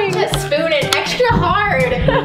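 Background music with held bass notes, and a woman laughing at the start.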